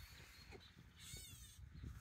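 Gray catbird giving a short, faint, wavering call about a second in.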